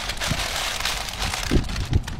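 Parchment paper rustling and crinkling as gloved hands fold and tug it around a cheese-wrapped burger, with a couple of soft knocks near the end.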